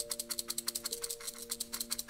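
Chinese fortune sticks (kau cim) being shaken in their cup with both hands, a fast, even rattle of sticks knocking together, to make one stick fall out. Background music with held notes plays underneath.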